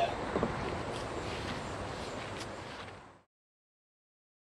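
Steady outdoor background noise with a few faint clicks, fading out and cutting to silence about three seconds in.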